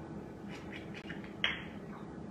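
Olive oil bottle being opened and handled, with one short scrape about a second and a half in, over quiet room tone.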